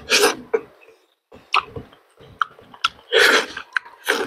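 Close-up eating sounds: bites into a soft food, with wet mouth noises and chewing. There are two longer, loud noisy bursts, one near the start and one near the end, and shorter sharp clicks in between.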